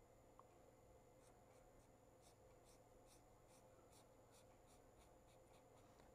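Faint scratching of a pen on paper: a run of short, even hatching strokes, about three a second, as an area is shaded in.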